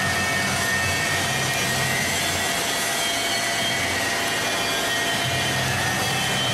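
Vincent screw press running steadily under load: a constant mechanical drone from its electric drive on a variable-frequency drive, with a low hum and a few steady high tones.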